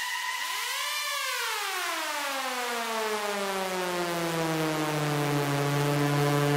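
Synthesizer tone with many overtones in a deep house track, with no drum beat. About a second in it rises to a peak, then glides slowly down in pitch over several seconds and settles into a low held note.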